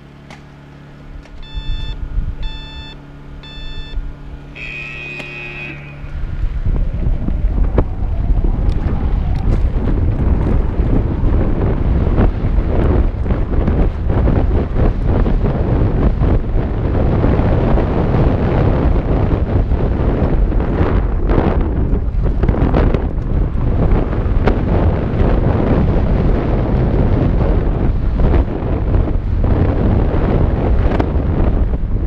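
Electronic start timer beeping a countdown: three short beeps, then a longer beep near five seconds in. Then, from about six seconds in, loud wind rushing over a helmet-mounted action camera and a mountain bike rattling over a dirt trail at speed.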